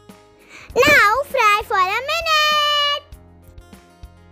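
Background music with a young child's high voice singing a short wordless phrase about a second in: three quick up-and-down swoops, then one held note.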